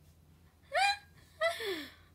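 A young woman laughing: two short high-pitched bursts about half a second apart, the second sliding down in pitch.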